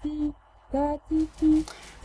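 Intro jingle of short, steady electronic tones, four notes in a simple melody, each lasting a fraction of a second with brief gaps between them.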